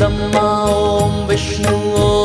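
Devotional Hindu dhun (Shiva chant): a male voice singing in held, gliding notes over instrumental accompaniment.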